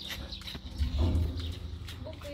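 Goats munching leaves they are hand-fed, with a run of irregular soft crunching ticks. A low rumble swells about a second in.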